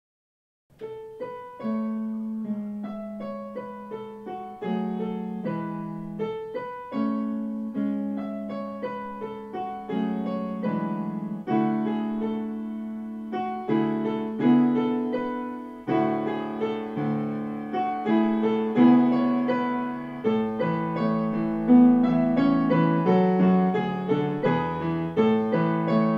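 Solo piano playing a slow, gentle melody in A major over sustained left-hand chords, in alternating bars of four and three beats. It begins about a second in and grows fuller and a little louder about halfway through as more voices join the chords.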